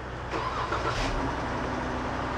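Car engine starting about halfway through, then idling with a steady hum.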